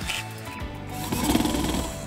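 Small cordless electric screwdriver running for just under a second, starting about a second in, driving down the spring-loaded mounting screws of a CPU cooler to compress the springs. Background music plays throughout.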